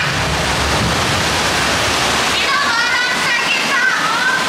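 Steady rushing of water streaming around a walk-through water vortex tunnel. About two and a half seconds in, a wavering voice rises over the water.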